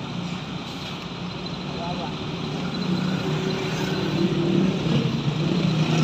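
A truck engine running nearby: a low, steady drone that grows gradually louder.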